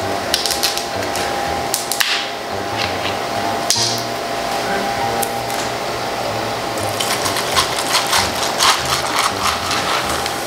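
A two-litre plastic bottle of cola is unscrewed, with a short hiss of escaping gas about four seconds in. From about seven seconds the cola is poured over ice into a plastic tumbler, with a dense run of quick fizzing ticks.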